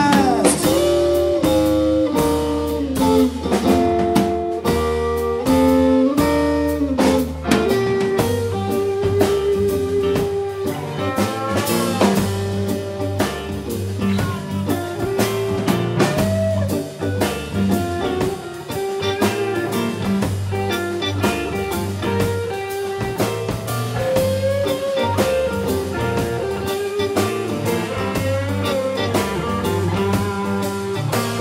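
Live blues band playing an instrumental break with no vocals: electric guitar lead with bent notes over drum kit, keyboard and rhythm guitar.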